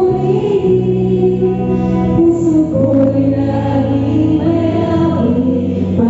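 Live worship song: singing amplified through a microphone over long held low chords, with no drums playing.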